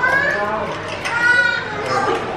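Indistinct voices of several people talking with no clear words, one voice held a little longer about a second in.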